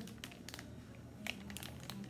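Plastic pack of wet wipes crinkling faintly as it is handled, a few scattered crackles.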